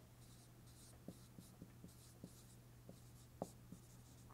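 Dry-erase marker writing figures on a whiteboard: faint scratchy strokes and a string of light, irregular taps, the clearest about three and a half seconds in.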